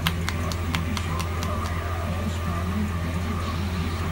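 Hands slapping and tapping on a man's scalp during an Indian head massage, a quick run of sharp pats about four a second that thins out about halfway through, over a steady low hum.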